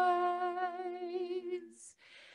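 Women's voices singing a cappella in harmony, holding a long note with a slight waver that fades out near the end, followed by a short breath.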